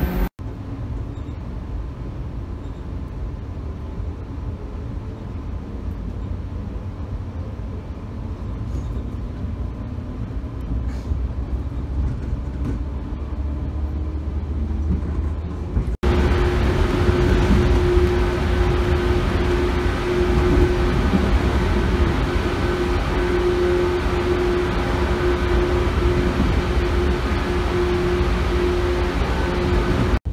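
Cabin running noise of a JR West 113 series electric train: a steady low rumble of wheels on rail. About halfway through it suddenly becomes louder and brighter as the train runs through a tunnel, with a steady humming tone.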